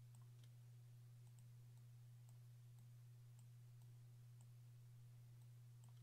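Near silence: a steady low hum with a few faint, scattered clicks.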